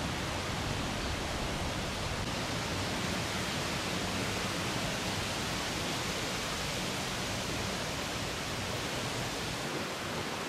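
Steady wind noise, an even rushing hiss with no distinct events.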